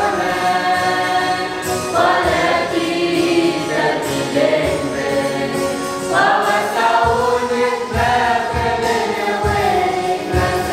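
Youth choir of mixed boys' and girls' voices singing a gospel hymn together, in phrases of long held notes. A low, regular beat joins in about seven seconds in.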